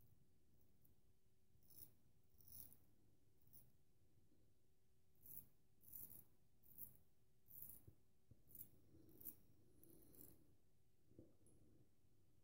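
Faint, short scraping strokes of a 13/16-inch full-hollow Magnetic Silver Steel straight razor cutting lathered stubble on the upper lip. There are about ten strokes, irregularly spaced, roughly one a second.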